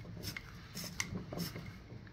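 Hand-held razor cable cutter biting through the fine tinned copper strands of a 1/0 power cable, with a few faint, sharp clicks as strands part. The blade is due for replacement.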